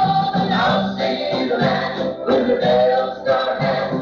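Gospel group singing a song in harmony, heard from an old cassette recording with the treble cut off.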